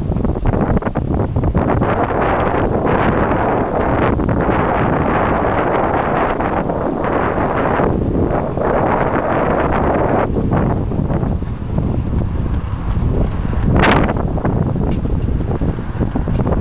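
Wind buffeting a camcorder's built-in microphone: a loud, steady rumble, with a brief louder burst near the end.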